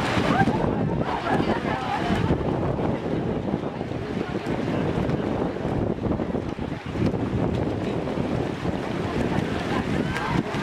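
Steady rushing noise of wind buffeting the microphone, over the splashing of swimmers racing freestyle, with faint crowd voices in the first couple of seconds.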